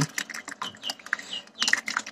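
Water trickling and splashing from a tipped plastic bucket into a tank of water, an irregular patter of small drips and plops. A few short high bird chirps sound in the background.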